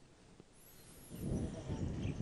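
Near silence for about a second, then low outdoor background noise with a deep rumble fading in and growing louder.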